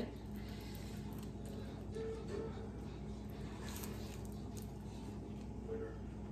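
A steady low hum, with a few faint clicks and soft short mouth sounds as beans are eaten off a tortilla scooped from a plastic bowl.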